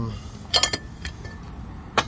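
A few light metal clinks: a quick cluster about half a second in and a single one about a second in, over a steady low rumble.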